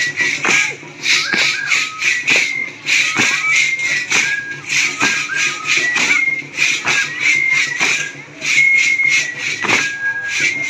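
Music for a Mexican danza: a high, whistle-like flute melody moving in short held notes over regular drum strikes, with a rhythmic shaking hiss about twice a second.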